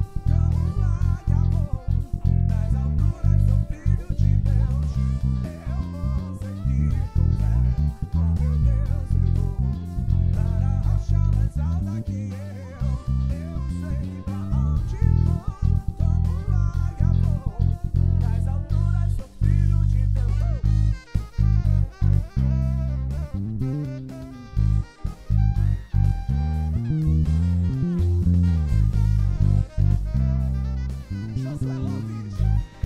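Electric bass, a Tagima Woodstock TW65 with P and J pickups, played fingerstyle in a steady walking line of plucked notes over a full band backing track with drums.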